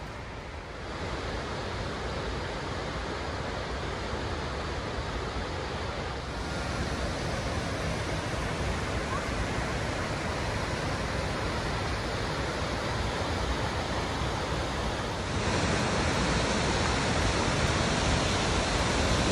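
Waterfall rushing: a steady roar of falling water that grows louder in steps as the falls are approached.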